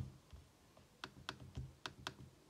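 A quick run of about five faint, sharp clicks from a MacBook Air being operated by hand, starting about a second in.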